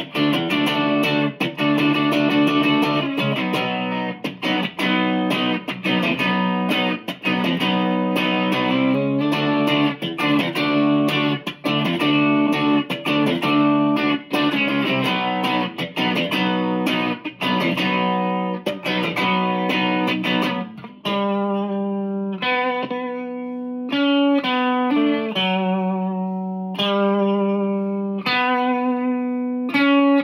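Electric guitar, a double-cut Firefly played through a Line 6 POD set to a punky British amp tone and a Monoprice Stage Right amp, strumming chords in quick rhythm. About 21 seconds in, the playing changes to single chords struck and left to ring out and fade.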